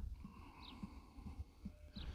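Faint outdoor background: low wind rumble on the microphone, with a short faint high chirp about a second in and another near the end, like a distant small bird.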